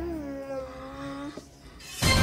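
A single long, whining voice-like call that slides down in pitch, then holds on a low note for over a second and stops with a brief upward flick.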